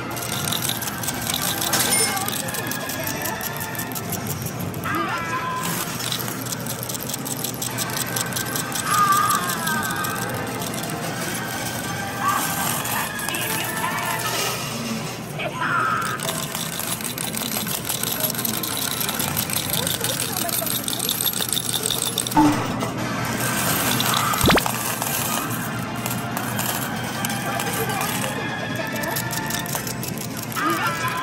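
Arcade noise around a medal coin-pusher machine: game music and electronic jingles, voices, and medals clattering, with a sharp click a little past the middle.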